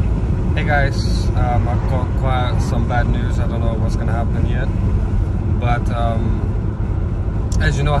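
Steady low rumble of a car being driven, heard inside the cabin, under a man talking intermittently.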